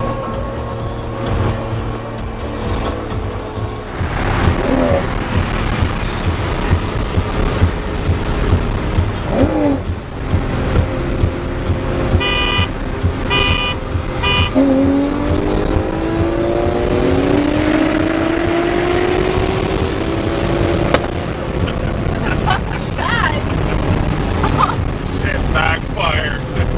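Cars at highway speed heard from inside a car's cabin, over a constant low road rumble. About twelve seconds in a car horn beeps three times in quick succession. After that an engine's pitch rises steadily through two long pulls as it accelerates.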